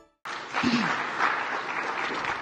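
An audience applauding, starting abruptly about a quarter second in after a brief gap of silence, with a faint voice heard under it.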